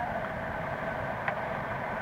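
Steady engine and road rumble of a moving tour bus, heard from inside the cabin through a lap-held cassette recorder, with tape hiss and a faint steady hum.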